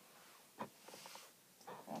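Near silence with faint movement on an exercise mat: a soft knock about half a second in and a light rustle about a second in.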